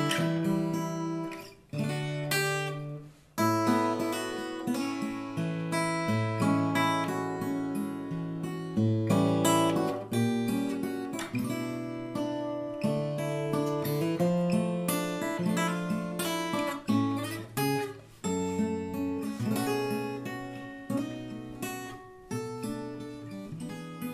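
Mahogany folk-bodied Sigma acoustic guitar played fingerstyle: a melody over picked bass notes and chords, with every note clear and rounded. The playing breaks off briefly twice in the first few seconds, then runs on.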